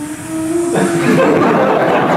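A drawn-out vocal "ooh"-like tone, then about a second in a loud burst of laughter and excited voices from several people.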